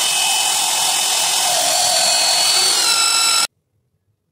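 Band saw blade cutting through metal rectangular tubing: a loud, steady grinding with high-pitched ringing tones, cutting off abruptly about three and a half seconds in.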